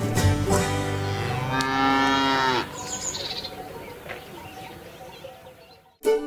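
A cow's moo in a programme's theme jingle: one moo, about a second long, dropping in pitch at its end, over plucked-string country music that then fades out.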